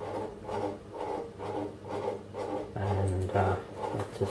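A man's low, indistinct voice murmuring in short bits, with a held low hum about three seconds in.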